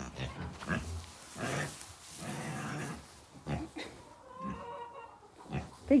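A pig grunting close by: a series of short, low grunts with breathy sniffing noise between them.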